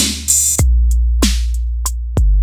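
A Maschine drum-machine loop with a long 808 sub-bass kick. It enters about half a second in, after a clap-like hit, with a quick pitch drop, and is joined by a few short hi-hat ticks. The Saturator's drive is turned down, so the bass sounds cleaner and less distorted.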